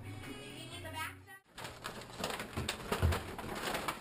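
Low voices over background music, broken off by a sudden cut about a second and a half in, followed by a busier mix with a few sharp knocks.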